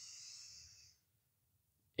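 A man drawing in a deep breath, a soft airy hiss that stops about a second in as he holds the breath at full lungs.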